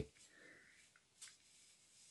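Near silence: room tone, with one faint brief tick a little past halfway.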